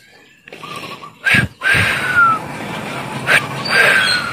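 Short falling whistled bird calls, twice, over a steady background hiss, with a brief knock about a second in.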